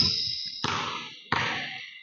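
A basketball dribbled slowly on a hardwood gym floor: three bounces about two-thirds of a second apart, each ringing out in the hall's echo. A short high squeak sounds at the start.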